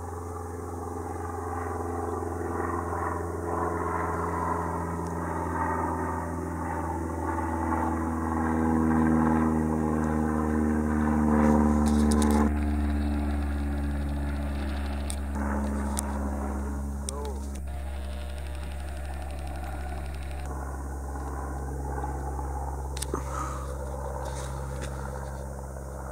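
An airplane engine droning overhead, a steady hum whose pitch shifts a little a few times as it passes.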